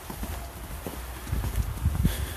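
Footsteps in snow: a few uneven, soft steps as someone walks.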